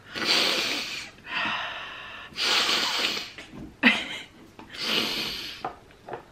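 A woman sniffing hard through her nose four times, drawing up a dose of decongestant nasal spray into a blocked nose.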